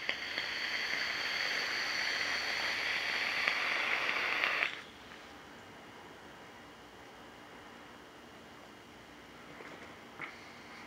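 Wet dual fused Clapton vape coils in a Drop Solo rebuildable dripping atomizer firing during a hit of about four and a half seconds: a steady sizzle and hiss of drawn air that cuts off suddenly. Faint room tone follows.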